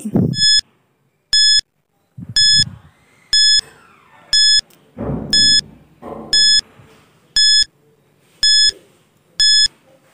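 Countdown timer sound effect beeping once a second: ten short, high-pitched beeps, evenly spaced. Between them, around two and five seconds in, come a couple of duller, lower noises.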